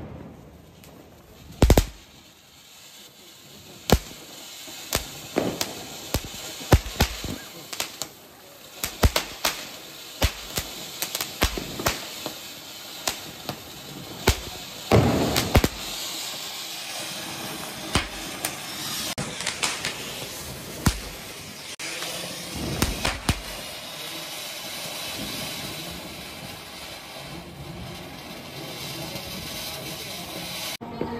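Sharp firecracker bangs going off irregularly, with a couple of louder blasts, while a flower-pot (anar) fountain firecracker sprays sparks with a steady hiss that grows stronger from about halfway through.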